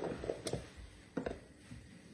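Chopped pickling vegetables scooped by hand from a plastic basin into a glass jar: a few soft, short rustles and knocks, bunched in the first half second with two more about a second in.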